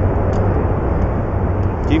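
Steady wind noise on a small action-camera microphone, a loud low rumble with no clear breaks.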